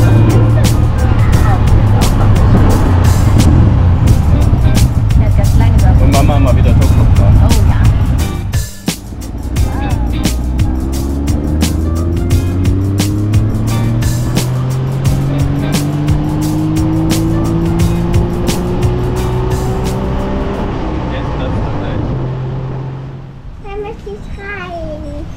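Tuk-tuk engine running under way with road noise for the first eight seconds. After a sudden break about nine seconds in, street traffic follows, with one vehicle's engine note rising slowly as it accelerates for about ten seconds.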